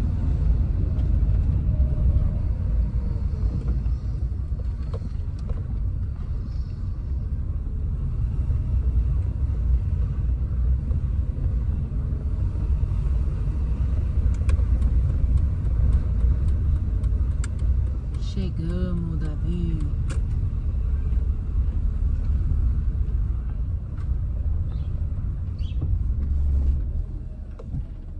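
Steady low rumble of a car's engine and tyres heard from inside the cabin while driving. The rumble drops noticeably in level about a second before the end.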